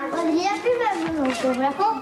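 Speech only: a high-pitched voice talking without a break.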